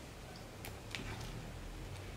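Faint stirring of a thick bean purée in a pan with a spoon, with a few light ticks of the spoon against the pan over a low steady hum.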